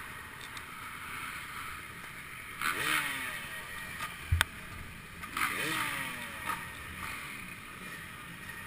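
Two short bursts of motorcycle engine sound about two and a half seconds apart, each rising and then falling in pitch, with a single sharp click between them.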